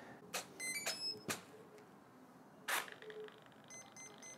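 A few faint clicks as the power lead is plugged into a model plane's electronics, with short high electronic start-up beeps under a second in and again near the end as the system powers up.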